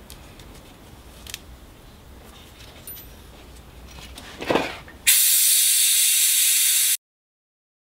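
Faint clicks of hand tools at a brake caliper, then a loud steady hiss of air for about two seconds that cuts off abruptly into silence. The hiss is typical of the vacuum brake bleeder running as it draws fluid through the caliper.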